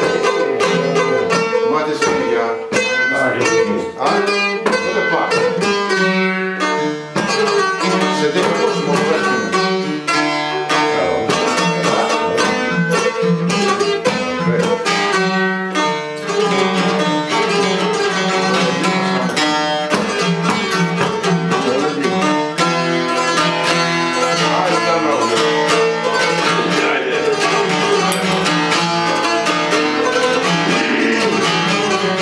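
Albanian folk lutes, a two-stringed çifteli and a sharki, played together: rapid plucked notes over a held drone, going without a break.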